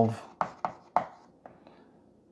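Chalk writing on a blackboard: three sharp taps of the chalk striking the board in the first second, then two fainter ones.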